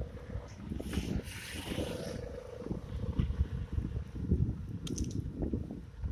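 Wind rumbling unevenly on the microphone of a camera carried while walking, with a short hissing gust about a second in.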